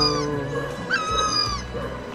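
An animal's high, clear call with a sharp rising start, repeating at an even pace of about one every 1.3 seconds; one call begins about a second in.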